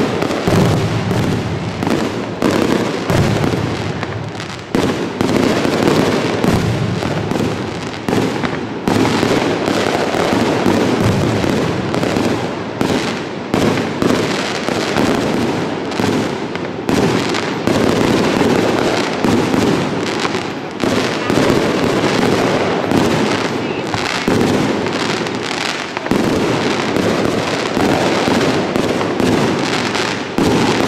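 Fireworks display: shells bursting overhead and ground fountains firing, a dense, unbroken run of bangs and crackles with hardly a gap.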